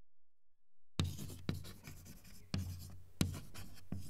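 Chalk scratching on a blackboard in a run of short writing strokes, starting about a second in.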